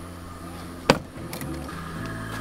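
A single sharp knock about a second in, over a low steady hum.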